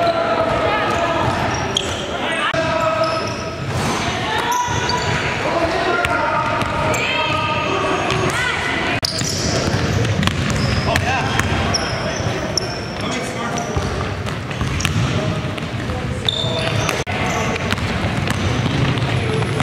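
A basketball being dribbled on a gym floor during a game, with repeated bounces and players' voices calling out in a large indoor gym.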